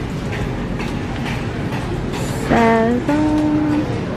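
Steady low background rumble of a supermarket aisle while walking. About two and a half seconds in, a person's voice makes a short sliding sound and then holds a single note for under a second.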